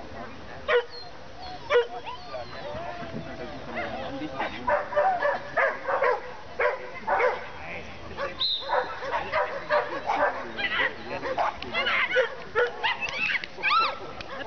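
A dog barking and yipping in short, sharp barks: two single barks about a second apart near the start, then a rapid, excited run of barks through the rest, typical of a dog worked up during an agility run, with people's voices mixed in.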